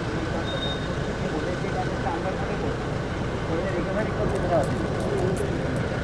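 Indistinct voices of several people talking at once, over a steady low rumble of outdoor background noise.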